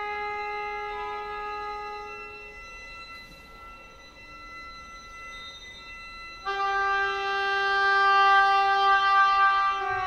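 Oboe and violin holding long sustained notes in a slow contemporary chamber piece. The notes thin out and soften in the middle, then a new, louder held note enters suddenly about six and a half seconds in and swells.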